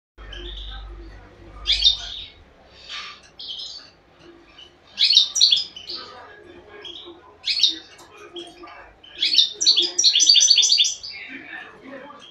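Caged finch singing: short bursts of twittering chirps, building near the end into a fast run of repeated high notes.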